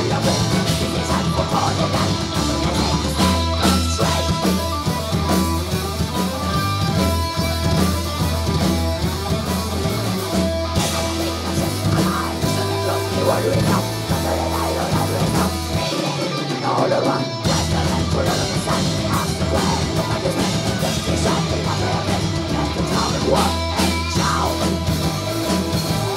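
Live folk metal band playing loud: distorted electric guitars, bass guitar and drum kit. The lowest bass drops out briefly about two-thirds of the way through.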